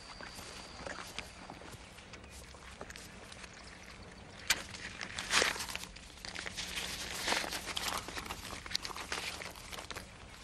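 Hands rustling paper banknotes and pulling at loose cushion stuffing: soft rustling and crinkling with a few sharper crackles, loudest around the middle.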